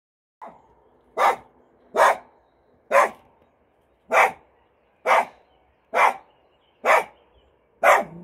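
A small black-and-white dog barking repeatedly: eight barks about a second apart, in an even rhythm.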